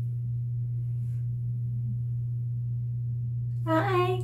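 A steady low hum, unchanging throughout, with a woman's voice breaking in near the end.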